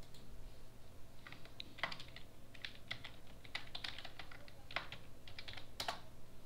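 Computer keyboard typing: a quick, irregular run of key clicks beginning about a second in as a password is keyed in.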